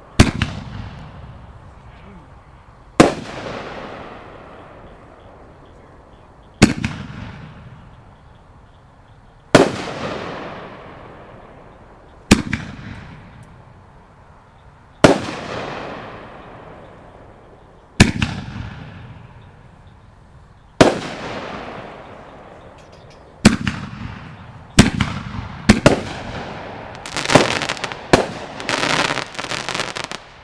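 Aerial firework shells from a three-inch rack bursting in the sky. Each gives a sharp bang followed by a long fading rumble and crackle, about every three seconds. Near the end the bursts come faster and overlap in a dense crackling.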